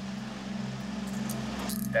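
A steady low hum runs throughout. Near the end come light metallic clicks and rattles as steel handcuffs are ratcheted shut on a suspect's wrists.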